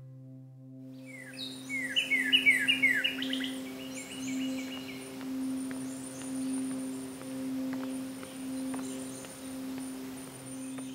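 Songbird calling: a quick run of short, falling chirps, loudest in the first few seconds, with a few fainter ones later. Under it runs a steady low humming tone that swells and fades about once a second.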